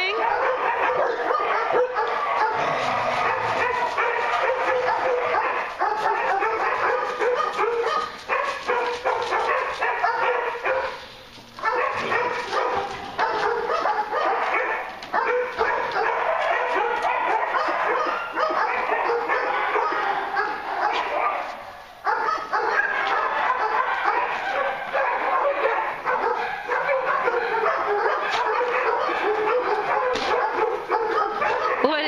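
Several dogs barking over one another almost without a break, dropping into brief lulls about eleven and twenty-two seconds in.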